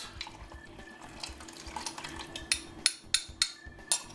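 A metal spoon stirring a cornstarch slurry in a glass measuring cup, clinking against the glass several times in the second half.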